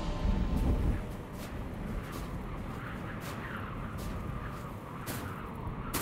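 Music fades out in the first second, leaving a steady low rumbling ambience with scattered short, sharp crackles.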